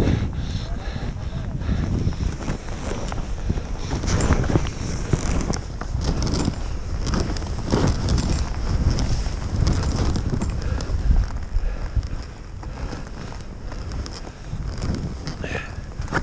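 Wind rushing over the camera microphone of a skier descending through off-piste powder, with the skis sliding and scraping through the snow.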